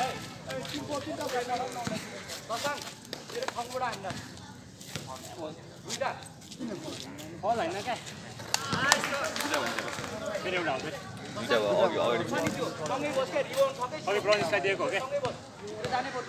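Spectators' and players' voices talking and calling out throughout, with a few sharp knocks.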